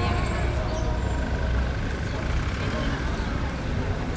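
Outdoor street ambience: a steady low rumble of traffic with indistinct voices of people in the background.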